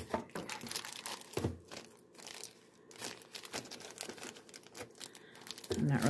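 Clear plastic packaging crinkling irregularly as it is handled, in scattered small crackles, with a sharper crackle about one and a half seconds in.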